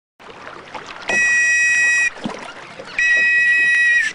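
A whistle blown twice: two long, steady, shrill blasts of about a second each, with a short gap between.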